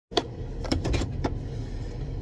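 Steady low rumble of a vehicle heard from inside its cab, with four short, light clicks.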